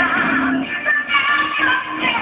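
A woman singing a song into a microphone with a live band backing her, her voice wavering with vibrato over sustained instrumental chords.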